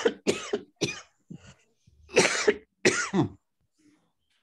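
A man coughing, about five short coughs in two bouts, the last two the loudest; he is ill with COVID.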